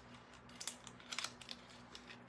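A few faint, crisp crackles of a paper transfer sheet being pressed and pulled around the rim of a painted tray, over a low steady hum.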